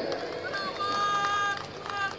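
A pause in an amplified rally speech: faint outdoor background with a faint steady pitched tone held for about a second in the middle.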